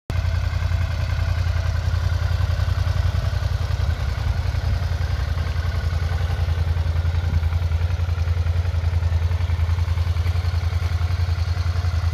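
Suzuki SV650S's 645 cc V-twin engine idling steadily with an even, low pulsing note.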